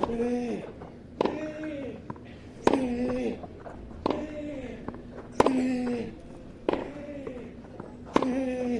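Tennis rally: six racket strikes on the ball at a steady rhythm, one about every second and a half as the players trade groundstrokes. Each strike is followed by a short grunt whose pitch falls away.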